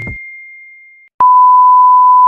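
A loud, steady electronic test-tone beep at a single pitch, the tone that goes with TV colour bars, starting just over a second in. Before it, a faint high tone fades out.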